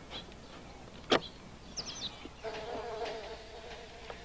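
A fly buzzing steadily, starting a little past halfway through. Before it comes a single sharp knock about a second in and a brief high squeak.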